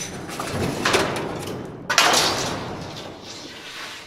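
Solid-fuel forge fire roaring under its air blast, surging sharply twice and then dying down.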